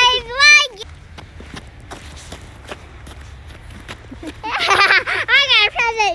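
A child's high-pitched voice making wordless, sing-song calls that waver in pitch, at the start and again from about four seconds in. In between, footsteps on a snowy sidewalk.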